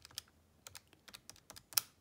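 Keys of a Casio fx-82ZA PLUS scientific calculator being pressed in quick succession: a run of light plastic clicks as a division is keyed in, the loudest click near the end.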